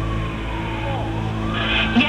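An emergency vehicle's siren wailing, its pitch sliding down and then rising again, heard through a narrowband radio recording with a steady low hum beneath it.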